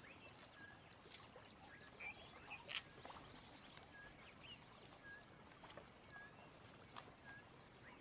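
Faint, near-silent outdoor ambience: a bird repeats a short chirp about once a second, with a few soft rustles and clicks near the middle.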